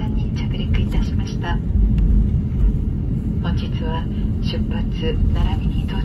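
Steady low rumble of a jet airliner's cabin as it taxis after landing, with engine and rolling noise heard from inside the cabin.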